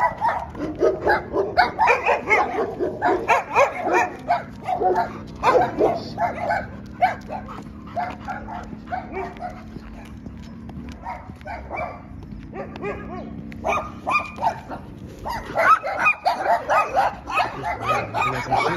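A dog barking and yelping in many short calls, thinning out for a few seconds in the middle before picking up again, over a steady low hum.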